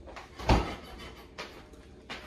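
A door thumping shut about half a second in, followed by a lighter knock, as something is taken from kitchen storage.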